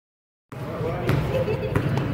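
A basketball bouncing on a gym floor: two thuds about two-thirds of a second apart, over the murmur of students' voices in the gym. The sound begins about half a second in.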